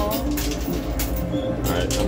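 Busy arcade ambience: machine music and background voices over a steady low hum, with a few sharp clinks from the coin pusher's quarters.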